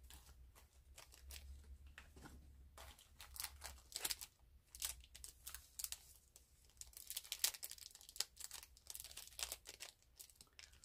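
Faint crinkling and rustling of plastic packaging being handled. It is sparse at first, then turns into quick, irregular crackles from about three seconds in.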